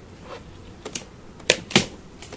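Several short knocks and clacks of beehive boxes and boards being handled, the two loudest close together about a second and a half in.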